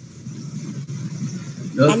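A low, uneven background rumble, then a person starts speaking near the end.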